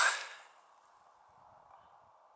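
A man's voice trailing off in the first half-second, then near silence with only a faint steady hiss.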